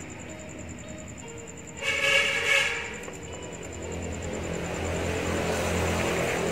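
Soft background music, broken about two seconds in by a loud horn-like blare lasting under a second, followed by a rumbling noise that builds toward the end.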